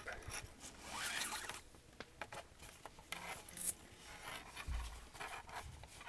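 Nylon paracord strands sliding and rubbing against each other and the fingers as a strand is drawn through a loop of a cobra weave knot, in several short rustling bursts, the strongest about a second in and about three seconds in.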